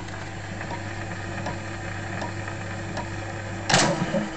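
A 78 rpm shellac record turning on after the song has ended: surface hiss and a steady hum, with a faint click about every three-quarters of a second, once per turn of the disc. Near the end, a loud, brief scrape.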